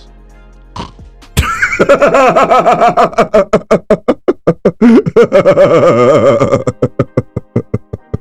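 Men laughing hard: a long, loud run of rapid ha-ha pulses that starts about a second and a half in and breaks up into spaced, fading bursts near the end.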